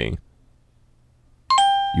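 A short pause, then about one and a half seconds in a two-note electronic chime sounds: a brief higher note falling to a lower held note, a doorbell-style ding-dong.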